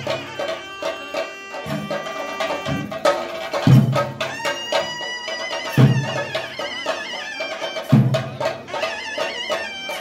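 Traditional Theyyam temple percussion: chenda drums played in rapid strokes, with a deep bass drum stroke landing about every two seconds, and a high, wavering melody line running over the drumming.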